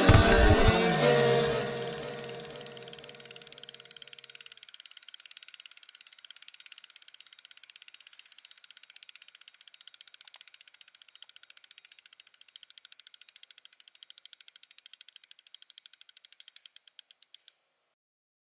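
Bicycle freewheel hub clicking as a spinning wheel coasts, the clicks getting slower and stopping near the end. A music track fades out in the first few seconds.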